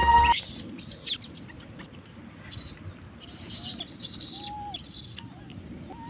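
Intro music cuts off suddenly at the start. Then there is quiet outdoor ambience: a steady low hiss with scattered bird chirps and a few short rising-and-falling whistled calls.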